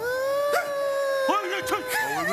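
A person's long, high, held howl-like wail with many overtones, starting suddenly and rising slightly before holding steady. About halfway through, short up-and-down vocal cries join it.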